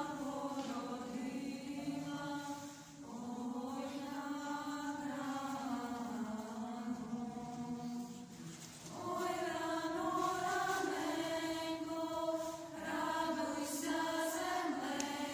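A small group of girls and young women singing a Ukrainian Christmas carol (koliadka) unaccompanied, in long held phrases with short breaks for breath about three and nine seconds in.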